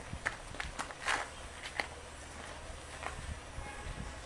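A few irregular light taps and scuffs, like footsteps, spaced unevenly over a faint steady background.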